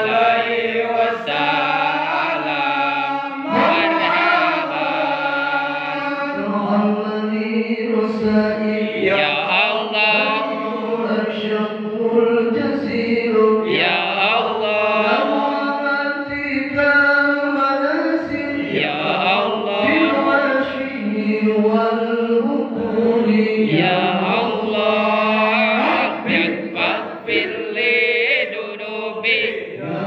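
Men chanting Arabic devotional verses of a marhaban recital (shalawat in praise of the Prophet) into a microphone, one voice leading with others joining, in long held, wavering melodic lines without pause.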